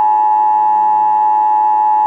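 Emergency Alert System attention signal: a loud, steady electronic tone of two close pitches sounding together, held without a break.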